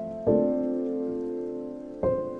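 Intro background music: a soft keyboard chord struck about a quarter of a second in, ringing and slowly fading.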